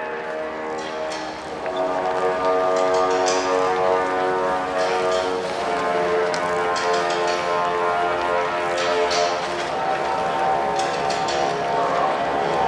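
Music over a stadium public-address system: a slow melody of long held notes, with brief rustling noises now and then.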